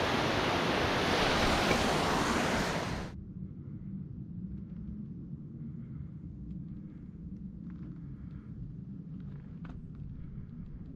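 Mountain stream rushing and cascading over rocks and logs at a small waterfall, cutting off suddenly about three seconds in. After it, a much quieter low wind rumble with a few faint ticks.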